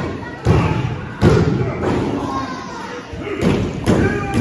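Heavy thuds on a wrestling ring's canvas, two close together about half a second and a second in and another near the end, echoing in a gymnasium, over crowd voices shouting.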